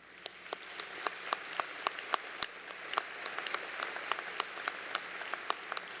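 Audience applauding, the clapping starting up and building over the first couple of seconds, then holding steady with single sharp claps standing out.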